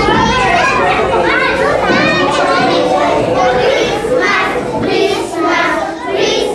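A group of young children's voices all at once, chattering and calling out over each other.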